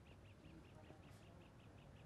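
Near silence, with a bird's faint rapid chirping at about five chirps a second.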